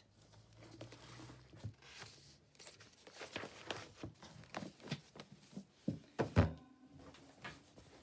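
Paper pages of a large, thick sheet-music book being turned and handled, rustling in quick short strokes, with a thump about six seconds in.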